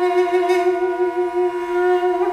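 Armenian duduk holding one long steady note, with a kamancheh bowed along with it.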